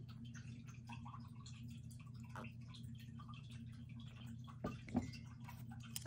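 Faint sips of herbal tea from a mug, then a couple of soft knocks a little before the end as the mug is set back down on the table, over a steady low hum.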